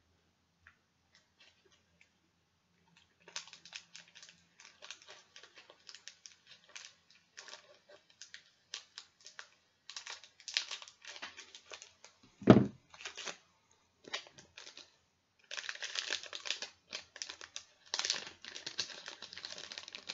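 Crinkling and crackling of a trading-card pack's plastic wrapper being torn open and handled, starting a few seconds in and growing busier toward the end, with one low thump about halfway through.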